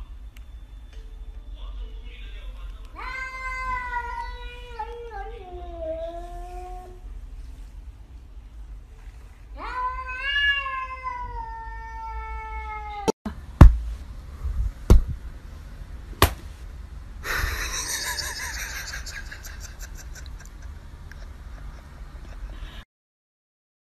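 Domestic cat giving two long, drawn-out meows, each sliding down in pitch, a few seconds apart. Later come a few sharp knocks, then a rough, noisy stretch.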